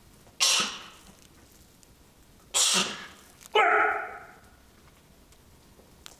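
A man exhaling sharply and forcefully with each rep of a barbell overhead press. There are hissing breaths about half a second and two and a half seconds in, then a strained, voiced grunt that falls in pitch at about three and a half seconds.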